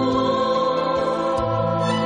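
Background music of slow, held chords, the low note changing about once every second and a half.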